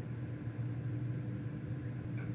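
Steady low hum with a faint hiss: room tone.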